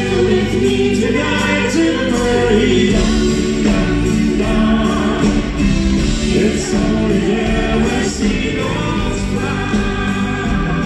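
A live band playing a song: several singers in harmony over a band with drums, amplified through a concert PA.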